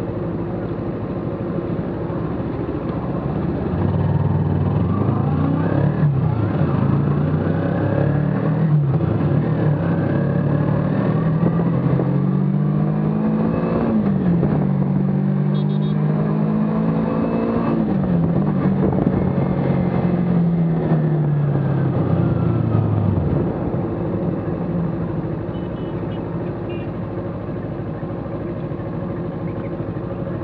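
Kawasaki Ninja 300's parallel-twin engine pulling away and accelerating up through the gears, its pitch climbing and dropping back at each upshift, with wind noise. About three-quarters of the way through the throttle closes and the engine falls to a quieter, low run as the bike slows.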